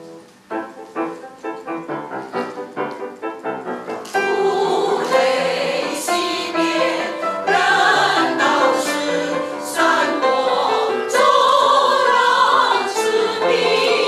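Quick repeated struck chords from the accompaniment, about three a second, then a mixed choir of men's and women's voices comes in loudly about four seconds in and sings on.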